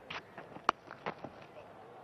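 A cricket bat hitting the ball with a single sharp crack about two-thirds of a second in, the shot pulled away for runs, among a few fainter knocks.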